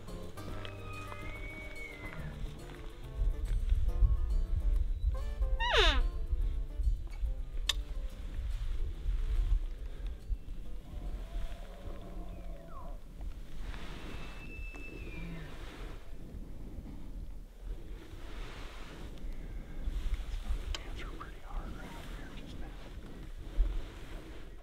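A bull elk bugling over background music: a high whistle that rises steeply, loudest about six seconds in, with shorter high calls near the start and about fourteen seconds in.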